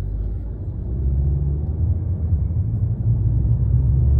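Low engine and road rumble heard inside a car's cabin while driving, growing a little louder about a second in.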